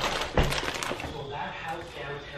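A couple of short knocks in the first half second, the louder about half a second in, followed by faint, indistinct voice-like sounds.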